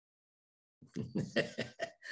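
A person coughing: a quick run of about five short coughs that starts about a second in, after a moment of silence.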